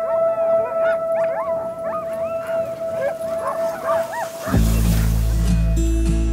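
A team of sled dogs yipping and howling, many short rising-and-falling yelps overlapping over a steady held tone. About four and a half seconds in, music with a deep bass comes in and takes over.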